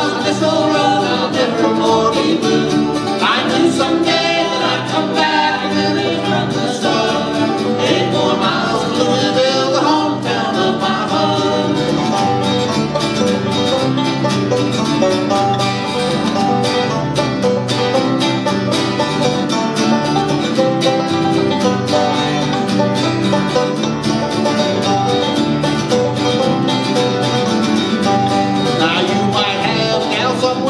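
Acoustic bluegrass band playing an instrumental break in a steady, driving rhythm: five-string banjo, fiddle and two acoustic guitars.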